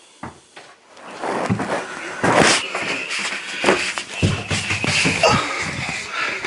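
Irregular knocks, bumps and rustling handling noise in a small wood-lined room, starting about a second in and continuing in a busy run of thumps.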